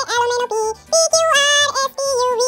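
Children's song music with a synthesized-sounding singing voice holding short melodic notes, with a brief gap a little before the middle.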